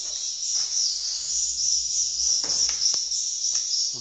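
A dense, steady, high-pitched twittering of many swiftlets at roost inside a swiftlet house, with a few faint clicks and knocks in the second half.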